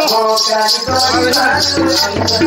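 Danda nrutya folk music: a melody over a steady rattling beat, with a deep barrel-drum sound joining about a second in.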